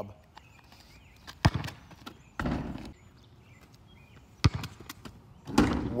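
A basketball bouncing on an asphalt court: two sharp thuds, about a second and a half in and again about three seconds later, with a brief duller noise between them.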